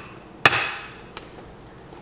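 A glass baking dish set down on a stone countertop: one sharp knock with a short ring that fades, then a faint click a little over a second in.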